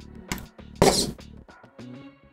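Background music, with a short burst of whirring and clatter about a second in from the leg servos of a Freenove Big Hexapod robot as they shift its body.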